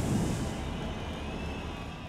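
Fading tail of an intro logo sound effect: a low rumble and hiss dying away, with a faint high held tone above it.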